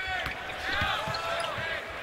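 Basketball court sound: sneakers squeaking in short rising-and-falling squeals on the hardwood floor, with a basketball being dribbled in low thumps.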